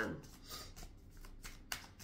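A deck of tarot cards being shuffled by hand: a string of irregular quick flicks and slides of the cards, one sharper snap about three-quarters of the way through.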